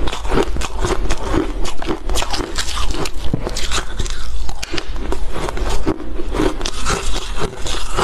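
Close-miked crunching and chewing of hard refrozen ice, a dense run of crackling bites, with a fresh piece bitten into about halfway through.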